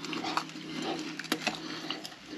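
Close-miked, wet, open-mouthed chewing of a bite of toasted grilled sandwich, with a few sharp crunches of the crust along the way.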